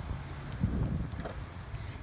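Wind rumbling on the microphone, with a couple of faint ticks.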